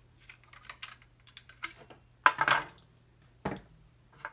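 Metal tape mechanism and plastic case of a Commodore C2N cassette drive being handled and set down on a wooden tabletop: a run of light plastic and metal clicks and rattles, a louder clatter a little past two seconds, and a single knock about three and a half seconds in.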